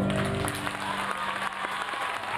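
An audience applauding by hand, with the last of a song's accompaniment fading away under the clapping.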